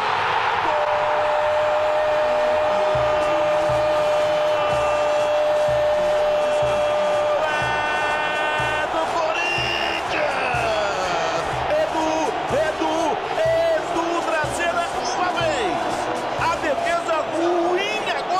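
TV football commentator's long held goal shout over a loud stadium crowd, lasting about seven seconds, followed by excited commentary. A regular low beat runs underneath, about two a second.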